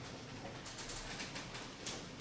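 Faint, light clicks of wooden chess pieces being picked up and set down on a wooden board, the sharpest just before the end. A soft, bird-like cooing call sits faintly in the background.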